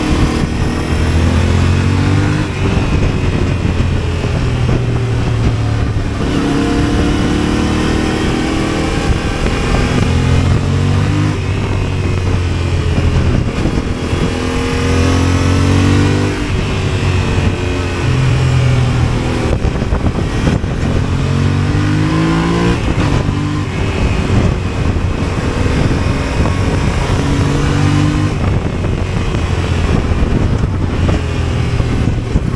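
Yamaha adventure motorcycle's engine accelerating through the gears, heard from on board: the engine note climbs for a second or two, then drops sharply at each upshift, several times over, with steady wind noise throughout.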